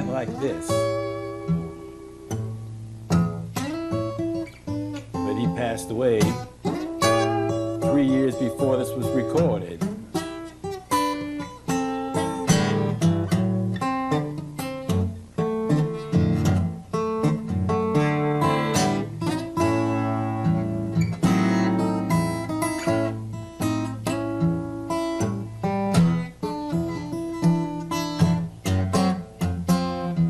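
Steel-string acoustic guitar fingerpicked in an old Mississippi blues style, the thumb keeping a steady bass under picked treble notes.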